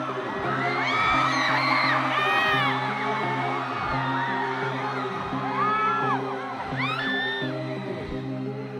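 Live concert: a held, unchanging low synth chord plays while a crowd of fans screams and whoops in many short high cries.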